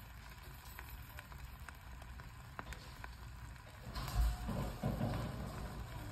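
Bibimbap sizzling and crackling in a hot pot on the stove as the rice crisps into a crust on the bottom. There is a louder low thump and rumble about four seconds in.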